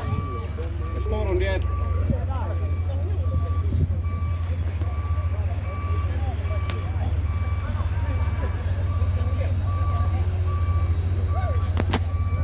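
Truck reversing alarm sounding a steady train of evenly spaced beeps over a constant low rumble, with voices in the background.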